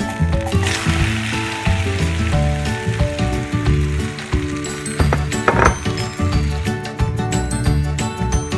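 An egg, grated carrot and cheese mixture sizzling as it hits hot oil in a pan. The sizzle starts about half a second in, is strongest at first and thins over the next few seconds, with a short rasp about five and a half seconds in. Background music plays throughout.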